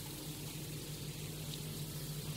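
A pause in a spoken talk: faint, steady background hiss with a low steady hum, the recording's noise floor.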